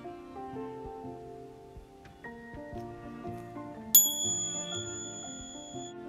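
Gentle instrumental background music with sustained notes, then a single bright, high bell ding about four seconds in, the loudest sound, ringing steadily for about two seconds until it cuts off.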